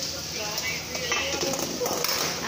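Light metal taps and clinks as a stainless steel lid is handled and lifted off an electric rice-cooker pot.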